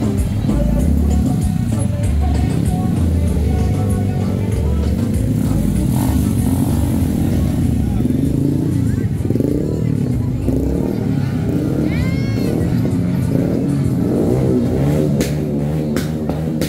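Motorcycles riding past slowly with their engines running, over loud music from a sound truck's loudspeakers and the voices of the crowd. A short rising-and-falling whistle-like glide is heard about twelve seconds in.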